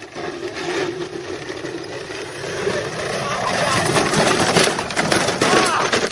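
Power Wheels battery-powered ride-on toy cars running with an electric whine, mixed with people yelling. The sound grows louder toward the end.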